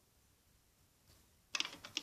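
Near silence, then a quick run of small sharp clicks and taps in the last half-second as the rubber-band charm and small metal tools are handled.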